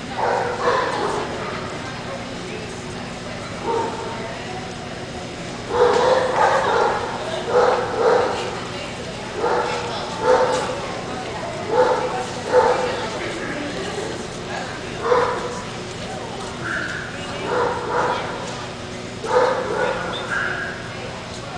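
A dog barking repeatedly in a large indoor hall, short barks coming about once a second from roughly six seconds in.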